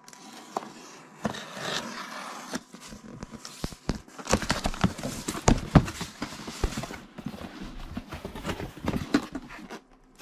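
Cardboard box being opened and its packing handled: cardboard flaps and papers rustling and scraping, with irregular knocks and taps that come thickest from about four seconds in.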